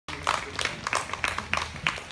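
Scattered hand claps from a small audience, irregular and several a second, over a steady low hum.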